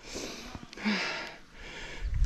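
A rider's breathing close to the microphone: two hissy breaths about a second apart.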